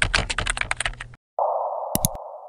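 Logo-animation sound effects: a fast run of sharp clicks like typing on a computer keyboard, stopping just after a second in. After a brief silent gap, a steady muffled hiss starts, with a couple of sharp clicks near the end.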